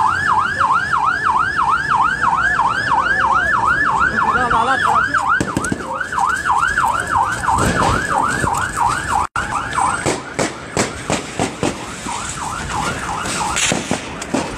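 Electronic vehicle siren in fast yelp mode, its pitch sweeping up and down about three times a second. It fades and breaks up about ten seconds in, giving way to a run of sharp cracks and knocks.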